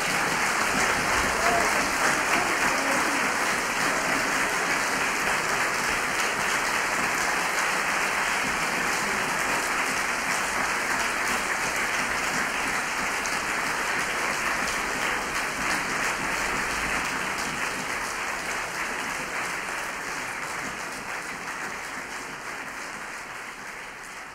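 Concert audience applauding steadily after an orchestral piece ends, the applause fading out over the last few seconds.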